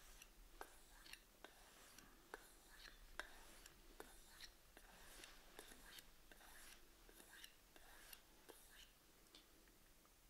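Faint, soft strokes of a knife blade drawn along a compound-loaded leather strop, with a few light ticks scattered among them.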